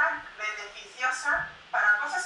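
A woman's voice speaking animatedly in quick phrases, heard through a laptop's speaker on a video call.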